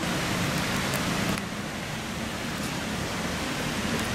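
Steady vehicle noise: an even hiss with a low engine hum underneath, a little quieter after about a second and a half.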